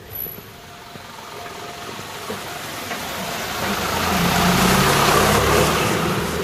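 A motor vehicle approaching on a wet road: the hiss of its tyres on the wet asphalt grows steadily louder, peaks near the end with its engine heard low underneath, then begins to ease.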